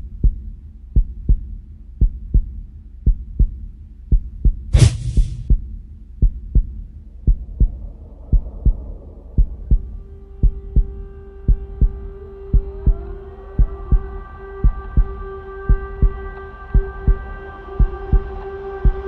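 Heartbeat sound effect: a steady low double thump about once a second, with one sharp whoosh about five seconds in. From about halfway a droning chord of held tones swells in under the beat.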